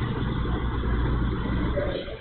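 Steady low rumble with an even hiss underneath, without speech.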